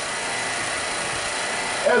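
A steady, even hiss of background noise with a faint thin whine in it during a pause in a man's speech; a spoken word begins at the very end.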